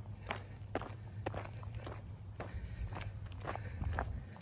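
Footsteps of a person walking at a steady pace, about two steps a second, over a low rumble.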